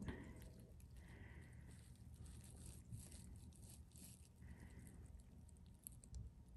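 Near silence: faint low room hum with a few very faint soft ticks.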